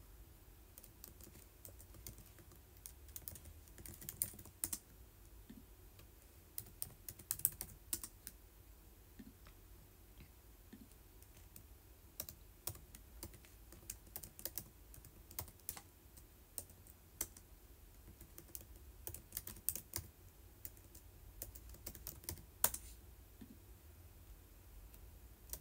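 Light, irregular tapping clicks, like typing, coming in clusters with short pauses, over a faint low room hum.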